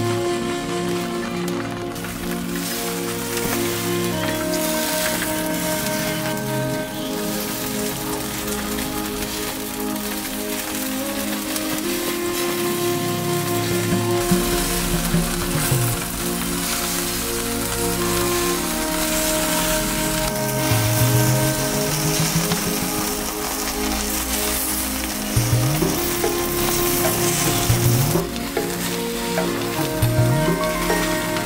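Adana kebab skewers sizzling over hot charcoal, under background music of long held notes, with a few low sliding tones in the second half.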